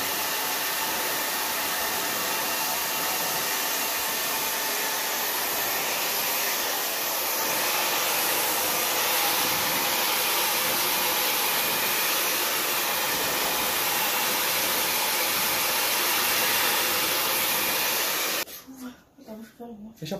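Hand-held hair dryer blowing steadily while hair is blow-dried, cutting off abruptly near the end.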